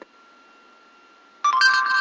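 Google voice search app on an iPod touch playing its two-note chime through the device's small speaker, about a second and a half in, signalling that it has stopped listening and is about to answer. Before the chime there is only a faint hum.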